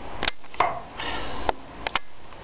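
A man's short, forceful breaths through the nose, several in quick succession, as he strains to drive a steel spike into a 2x4 with his bare hand.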